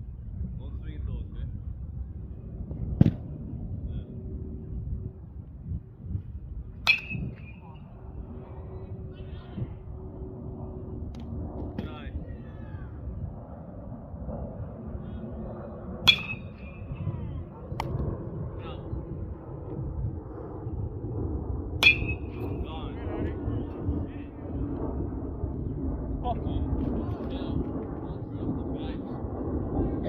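Metal baseball bat striking pitched balls in batting practice: a sharp ping with a brief high ring three times, about six seconds apart, with a few duller knocks between, over a low steady background rumble.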